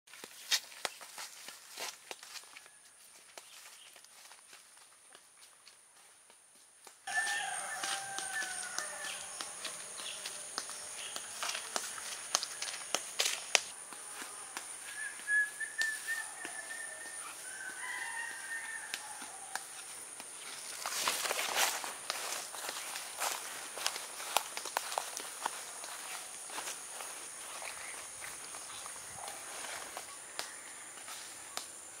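Footsteps through leaf litter and undergrowth, with a steady high insect drone starting about seven seconds in and bird calls over it.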